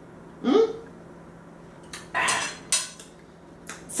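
A metal fork scraping and clinking against a ceramic plate: one longer scrape about two seconds in, then a few sharp clicks. A short hum of enjoyment ("mm") comes just before.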